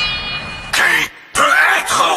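The hip-hop backing music breaks off with a fading ring. A short breathy burst follows, then a person's wordless vocal sound in the second half.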